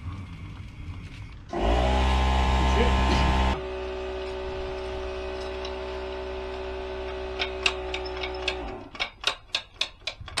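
Air compressor motor running with a steady hum. It is loud with added hiss for about two seconds after the first second and a half, then drops to a quieter steady hum that cuts off near the end. A quick run of sharp clicks follows.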